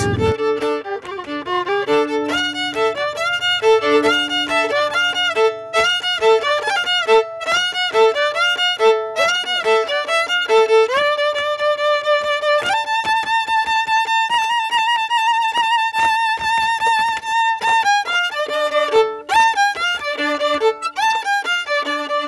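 Chapaco violin playing a lively Pascua folk dance tune in quick notes over a repeated lower two-note figure. About halfway through it climbs to a long held high note with vibrato, then goes back to the quick figures.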